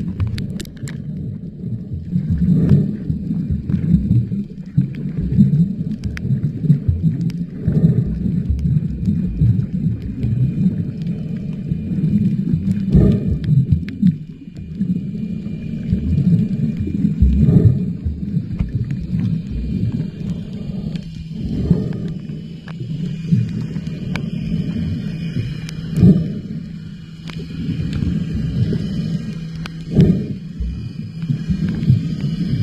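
Muffled underwater rumble of water moving around the camera as it swims, swelling every few seconds.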